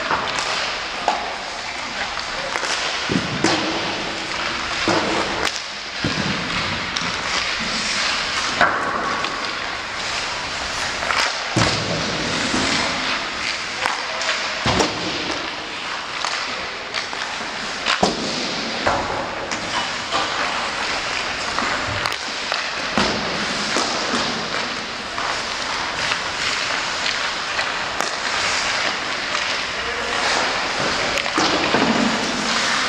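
Ice hockey warmup: a steady hiss of skates on ice, broken by frequent sharp cracks and thuds of sticks striking pucks and pucks hitting the boards and glass.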